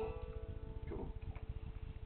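The last note of an old-time banjo-and-fiddle tune ringing on faintly as a single string tone that slowly fades once the playing has stopped, with a few soft clicks about a second in.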